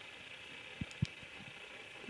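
Quiet room tone with two faint, short, low thumps about a quarter second apart near the middle, from a hand handling and tapping an iPhone 7 in a silicone case.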